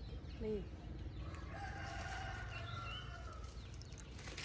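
A rooster crowing once: one long call of about two seconds, heard in the background.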